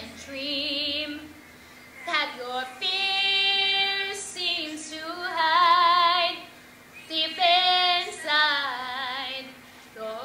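A teenage girl singing solo: one voice holding long notes with vibrato, in four phrases separated by short breaths.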